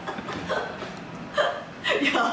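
People laughing, with two short, sharp vocal outbursts in the second half.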